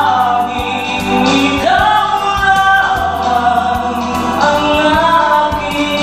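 A man singing karaoke into a handheld microphone over a backing track, holding long notes that swell and bend in pitch.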